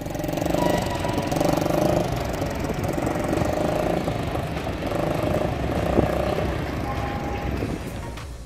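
Small engine of a mini chopper motorcycle running as it is ridden slowly, its note swelling and easing a little with the throttle.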